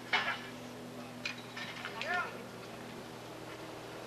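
Voices calling out during a roping run: a short sharp shout at the start and a rising-and-falling call about two seconds in, over a steady low hum.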